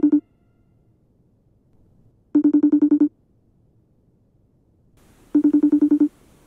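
A telephone ringing: a trilling electronic ring, each ring a quick burst of about eight pulses lasting under a second, coming about every three seconds. One ring is ending at the start, a full one comes a little over two seconds in, and another starts near the end.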